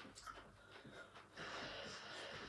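Faint breathing and soft footfalls of jogging on the spot on carpet, with a steadier breathy hiss setting in a little past halfway.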